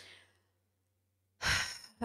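Near silence, then one short audible breath by a woman into a close microphone about one and a half seconds in, lasting about half a second.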